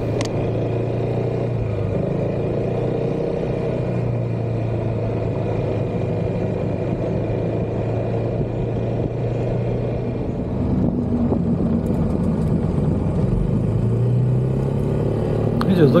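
Yamaha Xmax scooter engine running steadily at cruising speed, with wind noise on the microphone. About ten seconds in, the engine note rises a little and gets slightly louder.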